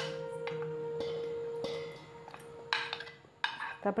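A spoon scraping and clinking against a plate as cut radish pieces are pushed off into a brass bowl, with a few sharp clicks in the second half. Soft background music holds a steady note underneath.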